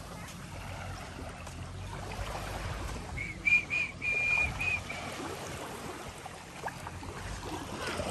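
Small waves lapping gently on a sandy shore, with a steady wash of water and wind noise. About three seconds in comes a quick run of five short, high, clear whistled notes.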